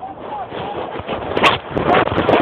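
Tractor diesel engine running rough and noisy, with people's voices over it and a sharp knock about one and a half seconds in.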